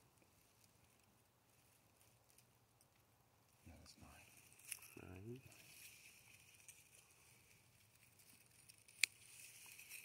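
Mostly near silence, broken by two brief murmured voice sounds about four and five seconds in and a couple of sharp scissor snips, the clearest near the end, as ghost pipe stems are cut.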